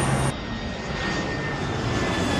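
Steady roar of a jet airliner's engines and rushing air heard from inside the passenger cabin in flight, starting abruptly about a third of a second in.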